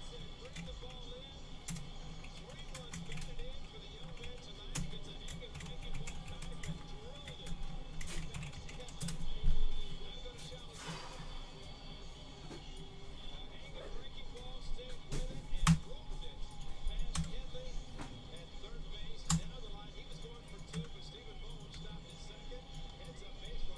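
Irregular clicks of typing on a computer keyboard, with faint music and voices in the background.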